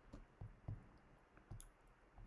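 Near silence: room tone with a handful of faint, short clicks.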